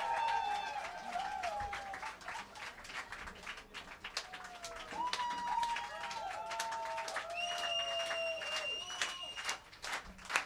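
Concert audience clapping, with a few voices calling out in long held cheers between the claps.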